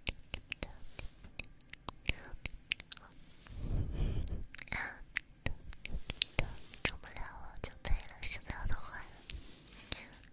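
Close-up ASMR mouth sounds right on a microphone: many short wet mouth clicks, soft whispering, and a breath blown onto the microphone about three and a half seconds in, with a rumble of air on the mic.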